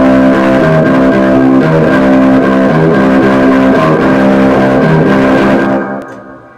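Electric guitars playing a loud, repeating riff, with no drums yet, the last chord dying away near the end.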